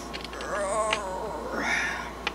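A domestic cat meowing: one drawn-out wavering meow, then a shorter, higher call near the end.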